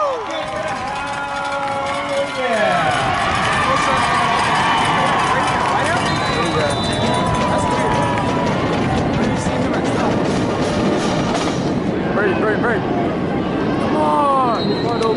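Crowd of spectators at a high-school football game, many voices yelling and cheering together as a play is run.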